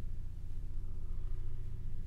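Acousmatic electroacoustic tape music: a dense, low rumbling drone with a rapid flutter running through it, and a few steady higher tones held above it.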